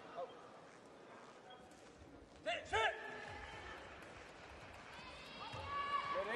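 Two short, loud shouts a fraction of a second apart about halfway in, each rising and falling in pitch. A held, higher call builds near the end.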